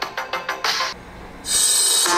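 Electronic music with a quick drum beat played through a Huawei Mate 30 Pro's loudspeakers. It dips briefly about a second in, then gives way to louder, fuller music played through a Galaxy Note 10+ from about one and a half seconds in.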